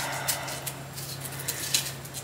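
A small kitchen knife peeling the skin off a cucumber held in the hand: faint, light scrapes and clicks, over a steady low hum.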